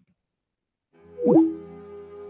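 Silence, then about a second in a short swooping sound effect with pitches sliding up and down, which settles into a held ambient music chord.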